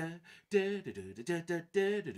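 A man singing a fiddle tune's melody on wordless syllables: a quick run of short sung notes, several of them held briefly at a steady pitch.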